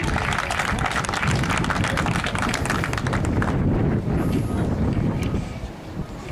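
Audience applauding, a dense patter of clapping that dies away a little over halfway through.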